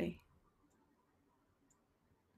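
A woman's soft voice trails off in the first moment, then near-silent room tone with faint high ticks about once a second.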